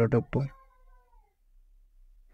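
A voice speaking for about the first half second, followed by a faint, slowly falling tone that dies away, then near silence.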